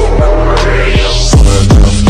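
Electronic dance music track: a rising sweep builds for about a second, then deep booming bass hits drop in about one and a half seconds in.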